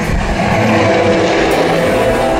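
Loud low rumbling from the dark ride's show audio, with steady held musical notes over it.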